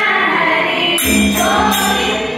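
A group of women singing a Hindu devotional bhajan in chorus, accompanied by a harmonium and tabla, with a bright metallic percussion stroke recurring on the beat.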